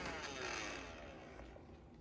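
Roomba robot vacuum's motors winding down just after being switched off at its top button: a falling whine that fades away.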